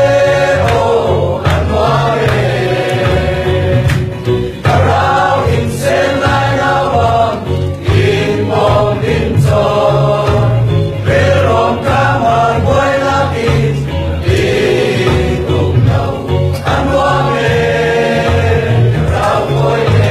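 A mixed group of young men and women singing a Chin-language Christian worship song together, over a low, rhythmic bass accompaniment.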